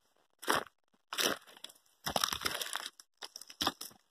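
Footsteps crunching through dry grass and brush, with twigs and stems scraping past, in irregular bursts.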